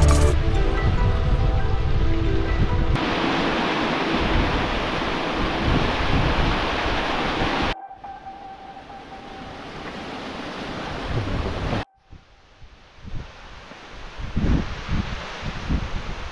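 Background music fading out over the first few seconds, then wind buffeting the microphone. The wind cuts off abruptly about eight seconds in and again about twelve seconds in, each time to a quieter stretch, the last one gusty.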